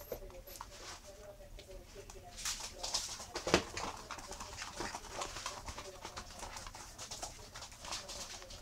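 Miniature schnauzer puppies playing. Low, wavering grumbling vocalisations come in the first couple of seconds, then scuffling, tapping and clattering as they wrestle on a hard floor, with one sharp knock about three and a half seconds in.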